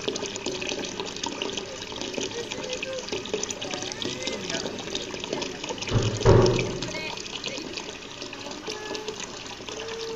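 Steady running, trickling water flowing into a small garden fish pond, with a single loud thump about six seconds in.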